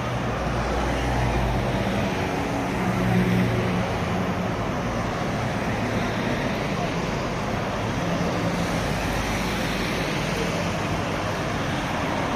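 Several cars driving past one after another in a slow line, with steady engine and tyre noise that swells briefly about three seconds in.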